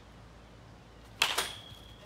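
Baseball bat hitting a short-tossed baseball: one sharp crack about a second in, followed by a high ringing ping that fades out over about half a second.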